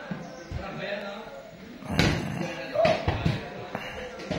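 Dull thuds of a hand patting and pressing on a bare, bloated belly: a few soft knocks, the loudest about two seconds in, with two more just after.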